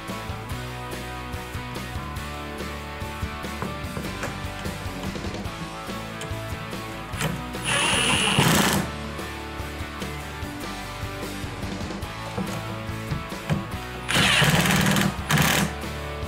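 Cordless impact driver hammering nuts tight onto bolts in two short runs, one of about a second midway and one of about a second and a half near the end, over steady background music.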